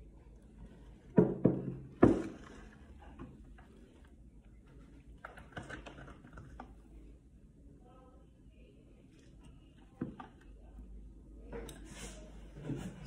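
Hand mixer and its butter-coated beaters being handled at a plastic mixing bowl with the motor off: two sharp knocks about a second and two seconds in, lighter clatter in the middle, and a thunk near the end.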